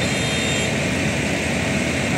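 Steady, loud rushing of a fire brigade's high-pressure hose jet spraying water onto a burning car, with the fire engine's pump running underneath.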